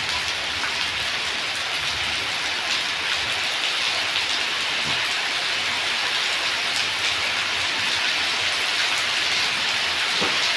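Heavy rain falling steadily on a wet concrete yard and roofs, with water running off a roof edge and splashing onto the ground: an even hiss of rain.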